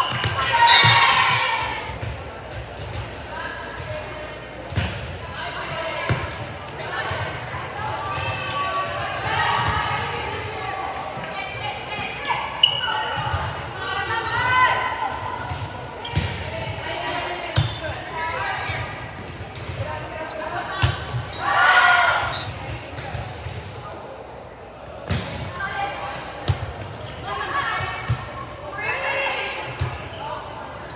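Volleyball rally in a large gym: sharp slaps of hands on the ball, echoing in the hall, with players calling out and spectators shouting and cheering. There is a loud burst of shouting about a second in and again about two-thirds of the way through.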